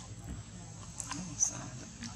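Young macaques scuffling in a fight, with one short high-pitched squeal about one and a half seconds in, the cry of a monkey resisting being grabbed.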